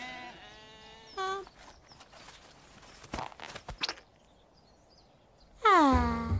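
Cartoon sheep bleating: a short wavering bleat about a second in, then a few light clicks around three seconds. Near the end comes a loud vocal cry whose pitch falls steeply.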